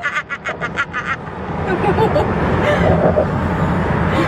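A quick run of laughter in the first second, then the steady road and engine noise of a moving car heard from inside the cabin, swelling louder and holding.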